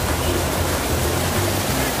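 Steady rush of a shallow, rocky river running over stones, with faint music in the background.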